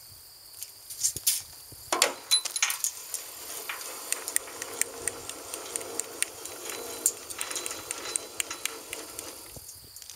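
Trailer tongue jack being hand-cranked down to lower the front of the trailer: a steady metallic rattle with many small clicks, starting about two seconds in.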